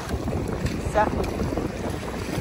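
The thin edge of a small sea wave washing up over wet sand, with wind buffeting the microphone.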